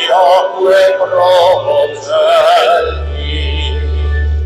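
Liturgical chant sung in phrases by a voice with vibrato. Near the end the singing stops and a low, steady note is held underneath.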